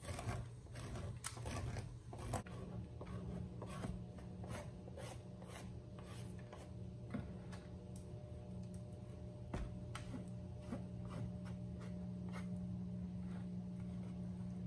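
Knife scraping sediment off the underside of a hardened cake of rendered beeswax, in repeated short strokes that are frequent at first and thin out later. A steady low hum runs underneath.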